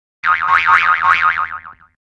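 A cartoon "boing" sound effect: one springy twang whose pitch wobbles rapidly up and down, about seven or eight times a second, fading out after about a second and a half.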